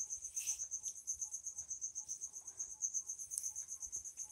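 Faint, high-pitched chirping of a cricket, a steady pulsed trill of about seven pulses a second.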